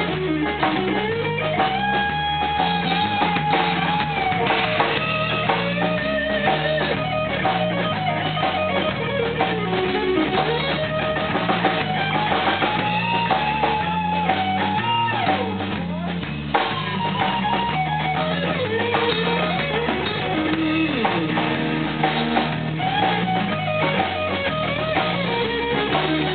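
Live blues-rock band playing an instrumental break: an electric guitar takes the lead with held and bent notes over drum kit and bass.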